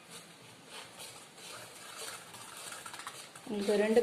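Wire whisk stirring dry flour in a stainless steel bowl: soft, irregular scratchy swishes with light ticks of the wires against the metal. A voice starts near the end.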